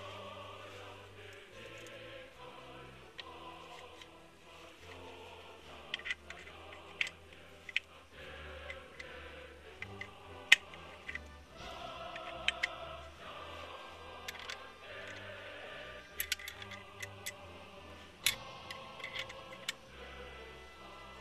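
Background music under scattered sharp metallic clicks from the parts of a Nagant M1895 revolver being fitted back together by hand. The sharpest click comes about halfway through, and more clicks cluster near the end.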